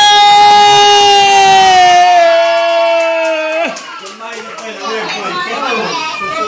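A loud, steady horn blast, its pitch sagging slightly, cut off suddenly after about three and a half seconds; then a crowd of voices and cheering.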